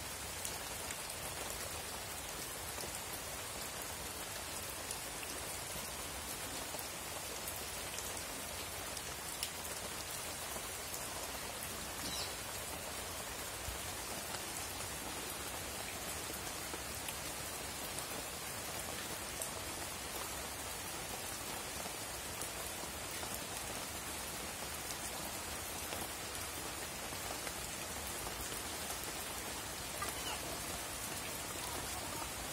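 A steady, even hiss with a few faint ticks and pops scattered through it.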